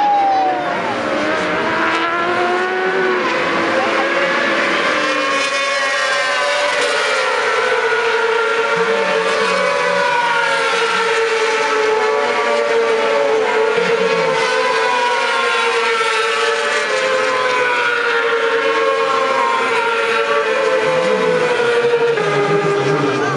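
A pack of 600 cc supersport racing motorcycles running at high revs. Their engine notes overlap, rising and falling continuously as they accelerate and shift gears around the circuit.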